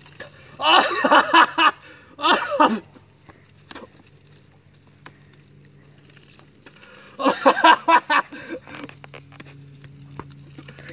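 A man's wordless vocal outbursts as Mentos foam erupts from the Pepsi bottle at his mouth. There are two short ones in the first three seconds and a longer one about seven seconds in, with quiet stretches between.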